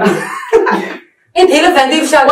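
People talking, with a short cough or throat-clearing among the voices; the talk breaks off briefly about a second in, then resumes.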